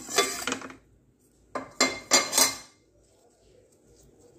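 Dishes clinking and clattering as a dinner plate and a steel container are handled. A short cluster of clinks comes at the start, and a longer one with several ringing strikes follows about a second and a half in.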